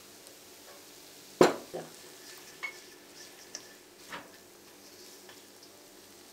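Boiled peas tipped from a bowl into a nonstick wok of sautéing vegetables, then stirred in with a plastic spatula, with a faint steady sizzle underneath. A single sharp knock about a second and a half in is the loudest sound, followed by a few lighter clicks of the spatula against the pan.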